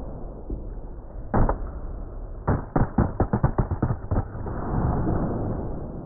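Hard knocks and clattering from a fall off a self-balancing hoverboard. One impact comes about a second and a half in, then a quick run of about ten knocks as the camera hits the floor and tumbles to rest, over a low rumble.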